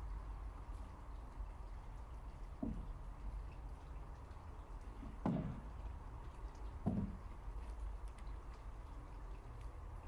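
Three soft, dull knocks a couple of seconds apart over a low, steady rumble, the middle one the loudest.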